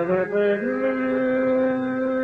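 Male ghazal singer's voice: a short sliding, ornamented phrase that settles about half a second in onto one long held note.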